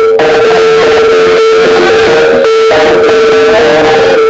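Loud, distorted jaranan music accompanying the barong dance, a long held melody note with a wavering line above it over a dense band mix.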